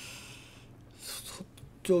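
Soft rustling noise, once at the start and again briefly about a second in.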